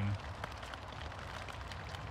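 Steady rain falling on a fabric tent roof overhead, an even hiss heard from inside the tent.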